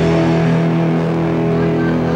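Live rock band holding one loud, distorted electric-guitar chord that rings on steadily.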